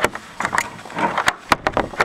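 Footsteps crunching through deep snow: a string of short, irregular crunches.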